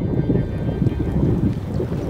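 Sound effect of a stormy sea: a loud, low, churning noise of heavy waves and wind.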